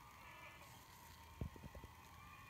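Very faint studio-audience cheering and kids' shrieks heard through a laptop speaker, barely above room noise, with a quick cluster of about five soft low thumps near the end.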